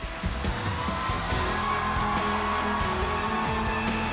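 Live rock band coming in at full volume right at the start, with drums, bass and guitars, and a long held melody line over them.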